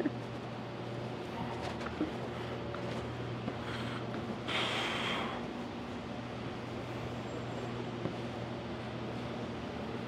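Steady low mechanical hum of a building's air-conditioning system, with a short burst of hiss about four and a half seconds in.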